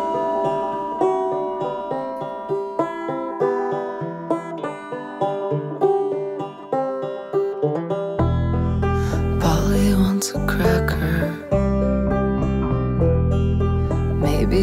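Instrumental break of a slow song: banjo picking single notes that ring and die away, joined about eight seconds in by deep, sustained bass notes from a Taurus bass pedal.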